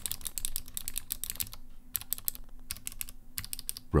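Typing on a Vissles LP85 keyboard's clicky optoelectric scissor switches: a quick run of sharp, high-pitched clicks, not rattly, with a couple of short pauses around the middle.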